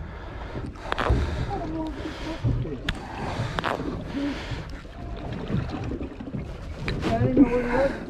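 Wind on the microphone and water lapping against the hull of a drifting fishing boat, with a few sharp clicks from handling the catch and line.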